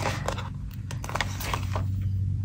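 Paper stickers being peeled from their sheet and pressed onto release paper with a spatula tool: a few soft scattered ticks and taps over a steady low hum.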